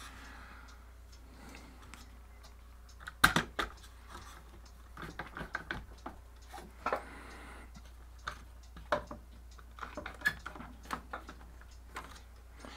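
Orange quick-release bar clamps being fitted and tightened on a wooden jig on a wooden workbench: a sharp knock about three seconds in, then runs of small clicks and clatter. A faint steady low hum runs underneath.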